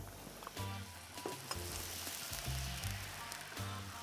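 Dry white wine being poured into a hot pan of softened onion, garlic and thyme, with the pan sizzling; the sizzle swells after about a second and a half. A background music bass line runs underneath.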